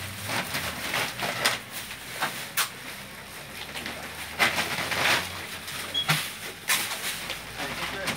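Homemade white shopping sack rustling and crinkling in irregular bursts as groceries are stuffed into it by hand.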